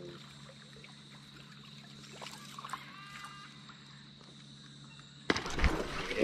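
A few seconds of quiet water with a faint high whine, then a sudden loud splash about five seconds in: a Murray cod striking a surface lure.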